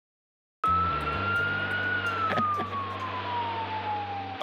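Emergency vehicle siren wailing, starting abruptly about half a second in: one tone that rises slightly, then falls slowly and steadily in pitch, over the steady drone of the vehicle's engine.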